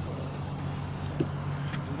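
Steady low engine hum in the background, with one brief word spoken about a second in.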